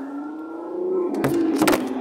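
Car-engine revving sound effect from a kiddie ride car's speaker, its pitch rising slowly and then easing off. In the second half come knocks and rubbing as the phone filming it is handled.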